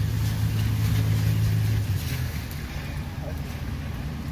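A motor vehicle engine humming steadily over the hiss of tyres on a wet road; the hum weakens about halfway through.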